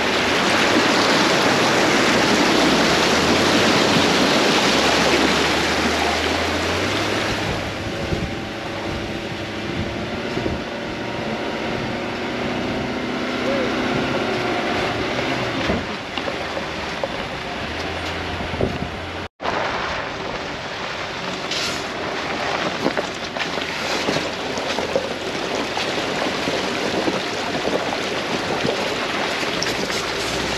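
A Nissan Patrol Y62's V8 engine running as it tows a caravan through creek crossings, its note stepping up and down with the revs. Water rushes and splashes, loudest in the first several seconds, with wind noise on the microphone. A brief drop-out comes about two-thirds of the way through.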